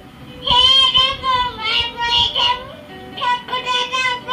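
A young child singing into a toy keyboard's plug-in microphone, in several short phrases with a brief pause a little past the middle.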